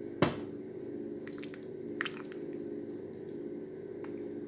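A spatula stirring a pot of broth with fish and vegetables: one sharp knock against the pot just after the start, then soft liquid squishes and a few light clicks, over a steady low hum.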